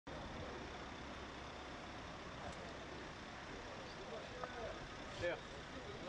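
Car engine running at low speed under steady street noise, with faint voices coming in during the last second or so.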